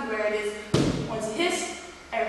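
A single sharp thump about three-quarters of a second in: a palm slapped flat against the wall.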